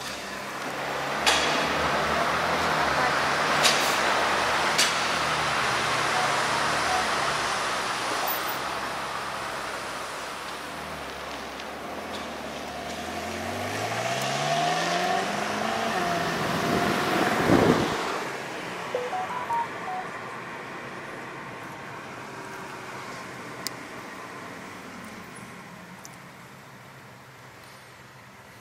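Ferrari California's V8 pulling away under hard acceleration, with a few sharp cracks in the first five seconds. A second burst of throttle sends the engine note climbing steeply to a peak, then the sound fades as the car draws away.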